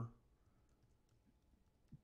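Near silence with a few faint computer keyboard key clicks as a word is typed.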